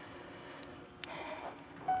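Quiet room tone with a couple of faint clicks and a soft rustle. Gentle sustained soundtrack music begins just before the end.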